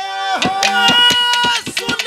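Haryanvi ragni folk music: a male voice holds long sung notes, wavering near the end, over sharp hand-drum strokes several times a second.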